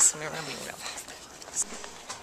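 A voice finishing a word, then low background noise with faint voices and a brief tick about one and a half seconds in.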